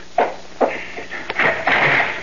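Radio-drama sound effects of a front door being unlatched and opened: a few short knocks and a sharp click, then a brief higher sound near the end.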